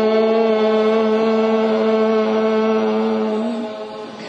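A voice chanting one long, steady held note that tapers off near the end.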